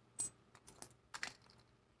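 Small metal airplane charms clinking together as they are picked through by hand: one sharper clink about a quarter second in, then several lighter clicks.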